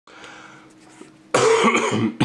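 A person coughing: one harsh cough starts abruptly a little over a second in, after faint room hum.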